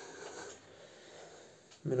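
A pause in a man's Italian speech: a soft breathy trail fades out in the first half second, then low room tone, and he starts speaking again near the end.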